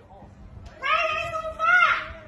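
A long, drawn-out, high-pitched cry begins about a second in, holds a steady pitch for just over a second, then falls away. It is one of a series of similar calls.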